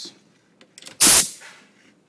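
A short, loud burst of hissing compressed air about a second in. It comes as an air hose's quick-connect coupler is pushed onto the male plug of the regulator on a Star lube-sizer's lube cylinder, and fades within about half a second.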